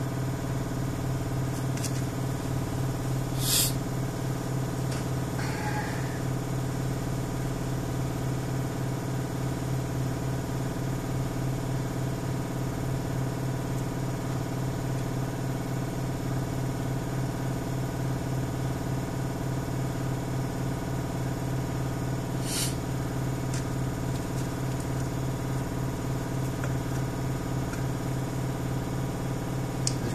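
Steady low machine hum, an even drone with a strong low tone and overtones, from the motor equipment of an airbrushing spray booth. A couple of brief sharp clicks cut through it, about three and a half seconds in and again past twenty seconds.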